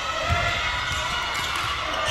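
A basketball bouncing a few times on a hardwood court, heard over the steady background noise of an indoor arena.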